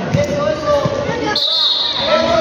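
A futsal ball thudding on the indoor court floor among voices, then a sharp whistle blast in the last half second, typical of a referee stopping play.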